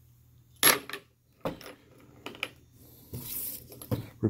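Light metallic clinks and taps of a spent brass rifle cartridge case being handled and set down on a table, the sharpest about two thirds of a second in, with lighter ticks after. A brief plastic rustle near the end.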